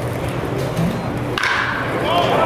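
Wooden baseball bat striking a pitched ball with one sharp crack about a second and a half in, followed by the crowd raising their voices and cheering.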